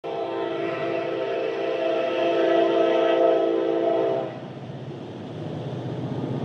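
Locomotive air horn holding one long chord of several tones for about four seconds, then cutting off, leaving the low rumble of a train running.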